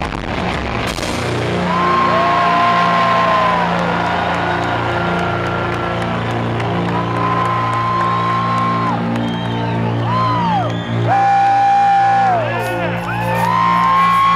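Live rock band ending a song, recorded close to the stage with distortion from the loud bass. Dense drum hits fill the first second, then low sustained notes ring on while audience members cheer and whoop in long calls that rise and fall.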